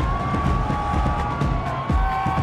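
Promo background music with a heavy pulsing beat and one long held note.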